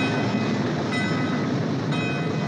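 Steam locomotive standing or moving off, with a steady rumble and hiss of steam and its bell ringing about once a second.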